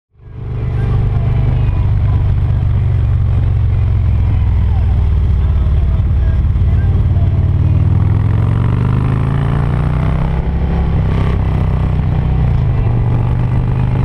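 Touring motorcycle engine running under way, heard from on the bike as it rides a twisting road, fading in at the start. Its pitch rises a little past the middle and dips again near the end as the rider works the throttle through the curves.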